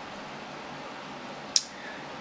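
Near-quiet room tone, a steady low hiss, with one short, sharp click about one and a half seconds in.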